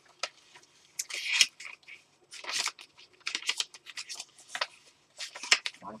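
Sketchbook pages rustling as they are handled and turned, in several short bursts of paper noise.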